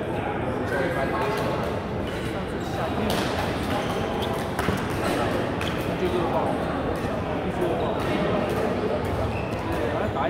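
Badminton rackets striking the shuttlecock in a rally, a series of sharp pops at irregular intervals, over the echoing chatter of a busy sports hall with several courts in play.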